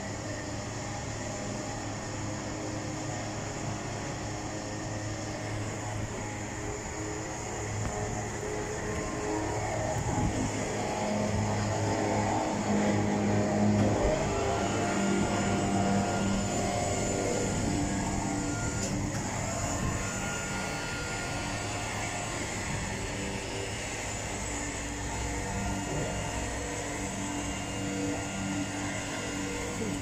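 A motor running with a steady hum, growing louder through the middle stretch, as the animal ambulance's powered lift and crane equipment is worked.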